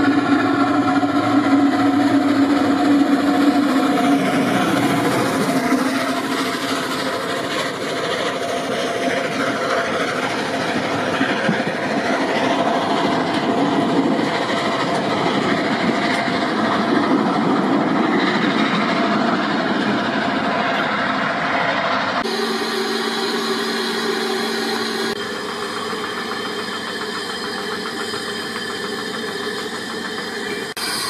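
Narrow-gauge steam train running past, its carriages rolling along the track with a continuous loud noise. Near the end the sound changes abruptly to a quieter steady one.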